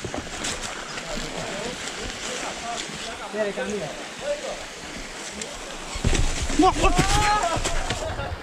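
Small forest stream running over a little waterfall: a steady wash of water, with indistinct voices. About six seconds in, a louder low rumble comes in under a voice.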